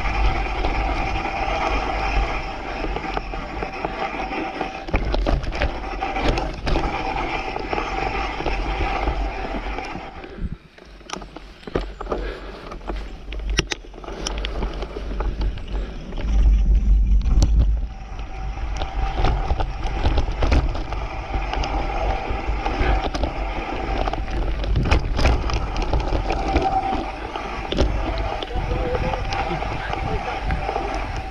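Mountain bike rolling over a dirt forest trail: tyre noise on the dirt with frequent knocks and rattles of the bike over bumps, and wind rumbling on the microphone. It drops quieter briefly about ten seconds in, and the wind rumble swells for a couple of seconds past the middle.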